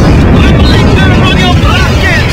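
Animated-film sound effects: a loud, continuous low rumble with short wavering high-pitched cries over it.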